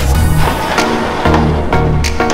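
Background music with a steady beat: held bass notes under drum hits.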